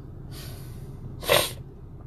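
A man sneezes once: a soft breath in, then a short, sharp burst of noise about a second later. A steady low car-cabin hum runs underneath.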